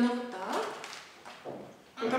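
A woman's voice trailing off at the end of a short phrase, then a brief quiet stretch with one faint click about a second and a half in.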